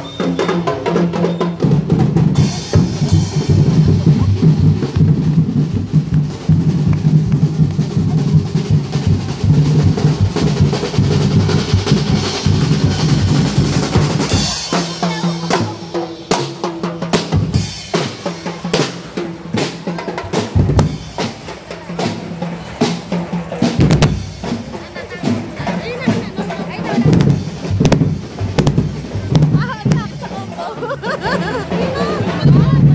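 A street drum corps of snare drums, bass drums and cymbals playing loudly. It keeps up a dense rolling beat for the first half, then switches to sharper, separate strokes about halfway through, with crowd voices underneath.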